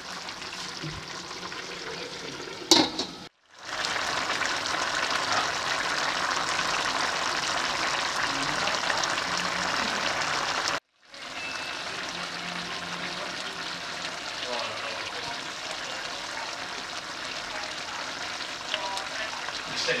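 Pork and liver menudo stew simmering in a pan, its thick sauce bubbling and sizzling steadily. There is a sharp click a little under three seconds in, and the sound cuts out briefly twice.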